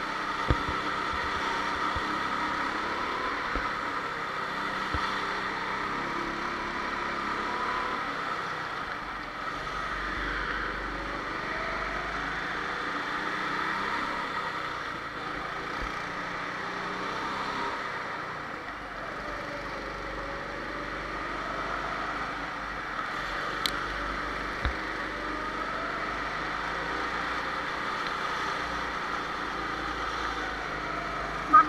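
Go-kart motor running continuously, its pitch rising and falling as the kart speeds up and slows. There are a few sharp knocks near the start and about two-thirds of the way through.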